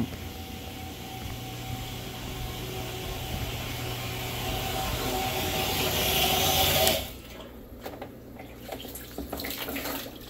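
Water rushing steadily from a water-change pump and hose setup, growing louder over about seven seconds and then cutting off suddenly, followed by faint clicks of handling.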